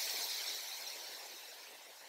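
Faint outdoor background rushing hiss that swells just before and then slowly fades away, with no distinct events in it.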